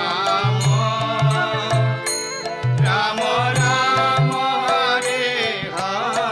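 Devotional kirtan music: a chanted melody over repeated low drum strokes and sharp cymbal-like clicks.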